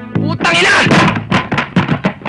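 Synth music stops at the start. A loud voiced cry follows, then a quick run of sharp thuds and knocks with grunts, about six in a second and a half.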